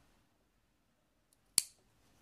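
Large metal tailoring shears closing once in a single sharp snip, cutting a small notch into the edge of a fabric sleeve, about one and a half seconds in. A faint tick comes just before it.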